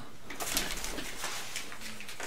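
Faint rustling and light knocks of someone turning in a desk chair while handling paper dollar bills, with a low rumble about half a second in.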